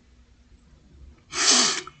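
A man's short, sharp burst of breath, about a second and a half in, after a silent pause.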